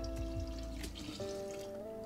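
Liquid kombucha starter poured in a stream from a glass measuring cup into a gallon glass jar of tea, heard under steady background guitar music.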